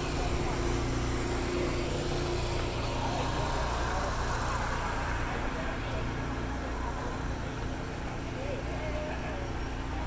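Outdoor market ambience: a steady low rumble and hum with distant, indistinct voices.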